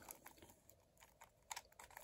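Faint plastic clicks of a modified MoYu WRM V10 3x3 speedcube as its layers are turned by hand: several short, scattered clicks, a few close together about three-quarters of the way in.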